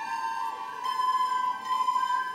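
A group of children's soprano recorders playing in unison, holding high notes with small pitch changes about half a second in and near the end.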